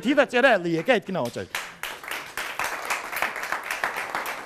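A man talks quickly for about the first second and a half. Then a studio audience breaks into applause, with many hands clapping.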